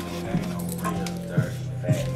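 Background music playing, with a dog whimpering in three short yips that fall in pitch, the last two near the end.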